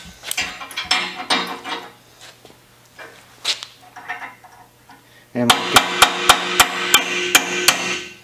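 Hammer striking a small pin punch to drive a rust-seized lever cam out of a Winchester 1873 lever clamped on a steel table. A few light taps come first. Then, over the last few seconds, a run of about eight sharp metal strikes, roughly three a second, with a steady ringing under them.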